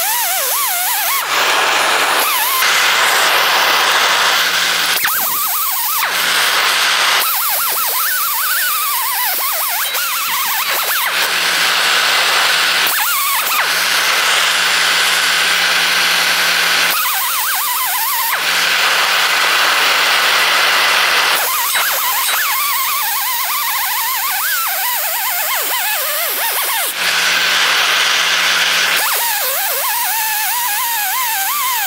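Pneumatic air grinder spinning a pure brass wire wheel against heated mild steel, rubbing brass onto the hot surface to plate it. It runs with a hiss and a whine whose pitch wavers under load, in short stretches that change abruptly every few seconds.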